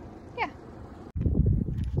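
Wind buffeting the microphone, a loud low rumble that cuts in abruptly about a second in. Before it, a single short "yeah" slides steeply down in pitch.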